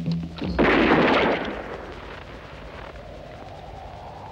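A single revolver shot on a film soundtrack about half a second in, loud, with a reverberant tail that dies away over about a second. Low music notes sound just before it, and a faint steady drone with a slowly rising tone follows.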